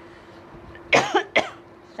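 A woman coughing twice in quick succession, about a second in.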